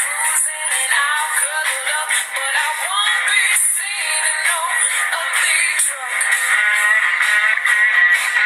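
A song with a solo sung vocal over instrumental accompaniment, the voice gliding between held notes. It sounds thin, with no bass.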